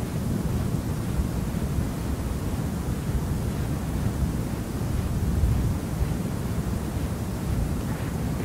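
Steady low rumble with a faint hiss, with no distinct events: the background noise of a lecture recording during a pause in the talk.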